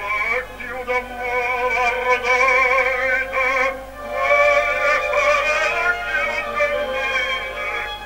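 Operatic baritone singing long held notes with a wide vibrato, with a brief break for breath about halfway through, on an old record with a low steady hum beneath it.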